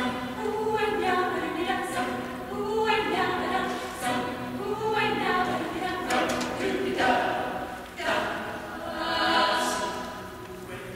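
Mixed youth choir of women's and men's voices singing unaccompanied: held chords in phrases that swell and break off every two or three seconds, with hissed consonants cutting through near the end.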